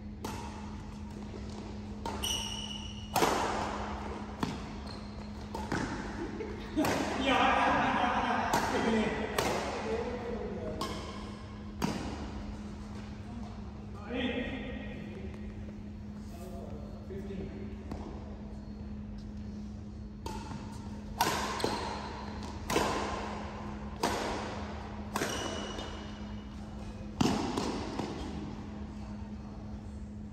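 Badminton rally: a string of sharp racket hits on the shuttlecock at irregular intervals, each echoing in the large sports hall, with players' voices between them.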